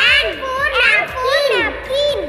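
A child's high-pitched voice singing or chanting the letter and word of an alphabet phonics song, 'N for napkin'.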